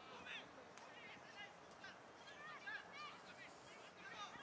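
Faint, distant high-pitched shouting voices, a string of short calls heard over background hiss.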